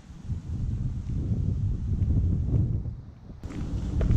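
Wind buffeting the microphone: an uneven low rumble that dips briefly about three seconds in.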